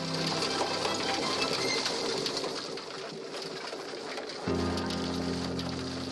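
Machinery noise with a dense clattering rattle from a conveyor belt carrying rubble at a recycling plant, under background music. Steady, held music notes come in about four and a half seconds in.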